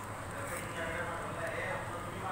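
Metal spoon stirring sago khichdi in a steel pan, scraping and knocking against the pan, with a faint voice in the background.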